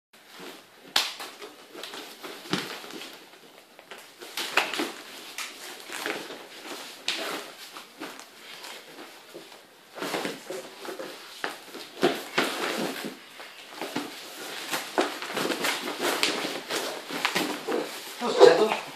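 Bodies, hands and bare feet thumping and scuffling on foam grappling mats as two men wrestle, with irregular knocks, the loudest about a second in.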